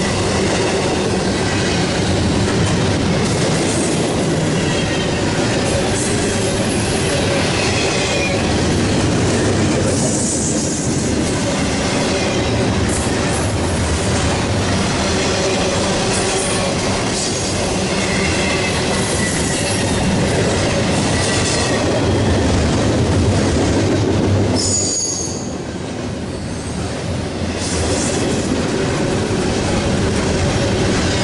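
Double-stack intermodal container train rolling past: steady rumble and clatter of freight car wheels on the rails, with faint wheel squeal and one brief high squeal near the end.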